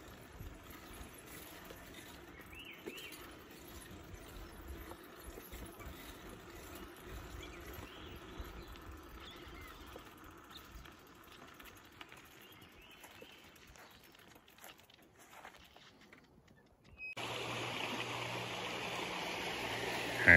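Faint rolling noise of a bicycle on a forest trail, with a few faint bird chirps. About three-quarters of the way through, it changes suddenly to the louder, steady rush of a small creek.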